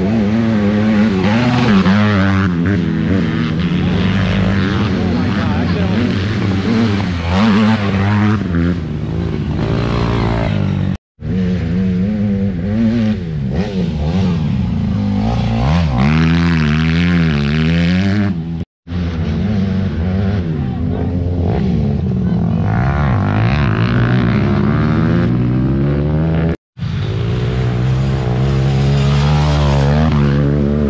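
Race ATV engines revving up and down as quads accelerate and slide through dirt turns. The sound breaks off abruptly three times between cuts.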